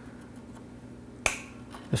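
A single sharp snip about a second in: cutters clipping through a slackened, detuned steel electric guitar string.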